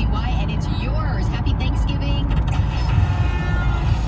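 Steady low rumble of a vehicle cruising at highway speed, heard from inside the cab, with indistinct voices over it.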